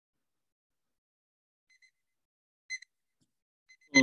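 Near silence broken by a few short, high electronic beeps in the second half, the loudest about three seconds in.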